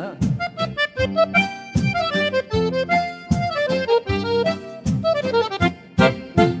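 Accordion playing a lively stepping melody over a steady bass and rhythm backing, in the instrumental close of a Brazilian gaúcho folk song.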